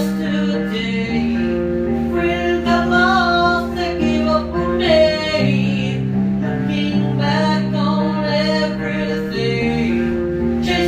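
Acoustic song on a phone recording: acoustic guitar chords with a voice singing over them. The chord changes about a second in, again about halfway, and near the end.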